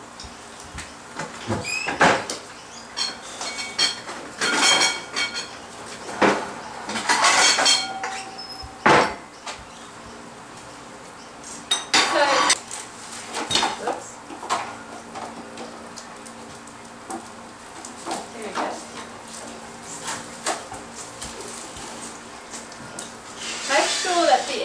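Plates and cutlery clinking and knocking, in scattered bursts as dishes are handled and set down on a kitchen counter.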